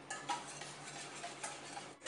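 Wire balloon whisk beating runny egg yolks in a stainless steel bowl, the wires scraping and clicking against the metal in repeated strokes.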